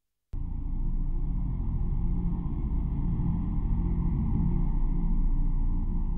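Deep, steady rumbling drone of a logo sound effect, cutting in suddenly after a moment of silence about a third of a second in.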